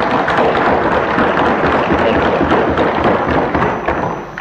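Assembly members clapping and thumping their desks in a loud, dense round of applause that dies down near the end.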